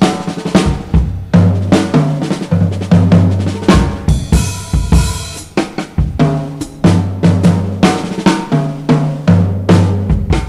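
Jazz drum kit played alone in a solo: fast snare strikes, rimshots and rolls over bass drum and hi-hat.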